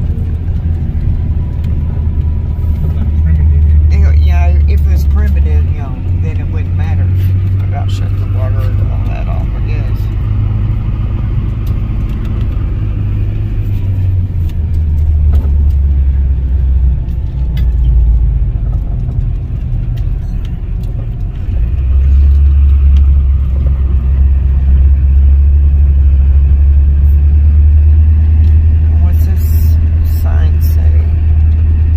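Car interior noise while driving slowly on a paved road: a steady low rumble of engine and tyres that shifts in level a few times.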